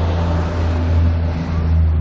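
A loud, steady rushing noise over a constant low hum, swelling slightly in the middle.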